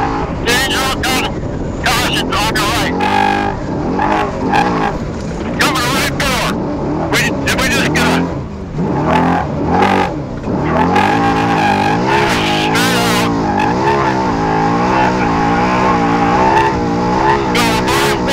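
Trophy truck engine driven hard on a dirt desert course, its revs climbing and falling over and over, with a steady high whine running under it and frequent sharp clatters.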